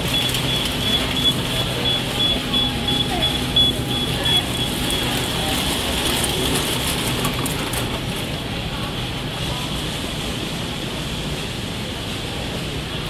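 Airport concourse ambience: a long row of nested luggage trolleys rolling and rattling past, with voices of passers-by and a steady hum. A repeated high beeping runs through the first few seconds and then stops.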